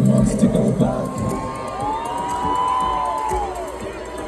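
Festival crowd cheering and whooping over electronic dance music. About a second in, the dense low music drops back, leaving long rising-and-falling tones over the cheering.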